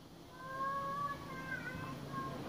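A single drawn-out, high-pitched animal call, held for about a second and a half and wavering near the end.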